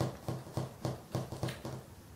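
Light, evenly spaced clicks, about three a second, as a threaded hose collar on a methanol injector and flow sensor fitting is twisted finger-tight over a pushed-on tube.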